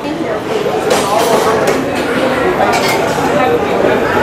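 Metal serving tongs clinking against white ceramic salad bowls and plates, several short clinks, over a steady background of voices.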